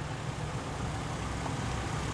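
A vehicle engine running with a steady low rumble.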